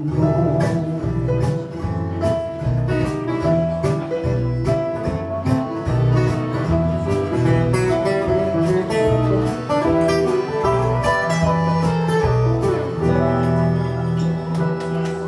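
Live band playing an instrumental passage: strummed acoustic guitar with bayan (button accordion), clarinet, keyboard, bass guitar and a drum kit keeping a steady beat.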